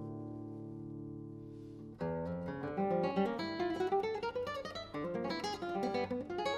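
Solo classical guitar: a chord rings out and fades for about two seconds, then a fast, busy passage of plucked notes begins and runs on.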